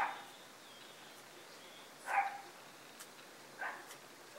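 A dog barking three times, short single barks: one at the start, one about two seconds in, and one near the end.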